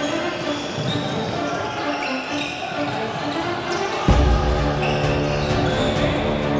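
Basketball being bounced on a hardwood gym floor amid game noise, with music playing over it. About four seconds in, the sound changes abruptly to louder music with a heavy bass.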